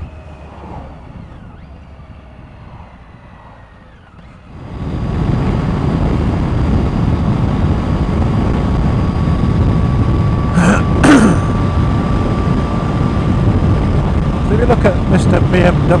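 Triumph Tiger motorcycle heard from the rider's helmet camera: the engine runs quietly for the first few seconds, then about four seconds in loud, steady wind and road rush rises as it rides at dual-carriageway speed, with a thin steady whine over it.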